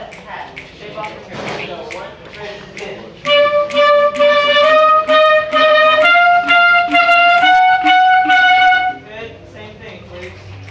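Wind instruments of a school band playing a loud passage of held notes, stepping up in pitch about four times. It starts about three seconds in and stops about a second before the end, after some low chatter.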